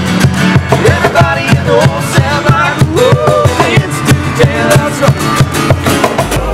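A small acoustic band playing: two strummed acoustic guitars over a steady beat from a cajon.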